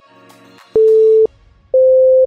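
Two loud electronic timer beeps about a second apart, each about half a second long, the second slightly higher in pitch, signalling the end of a timed hold. Soft background music stops as the first beep sounds.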